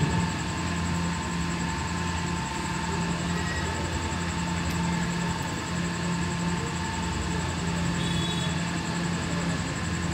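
Steady hum and background noise picked up through the microphones of a hall sound system during a pause in recitation, with no voice.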